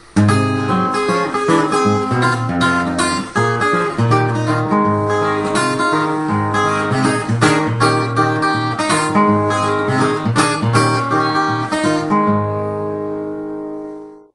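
Steel-string acoustic guitar fingerpicked: a ragtime-style acoustic blues intro in G, bass notes under a picked treble melody. Near the end it settles on a chord that rings out and fades away.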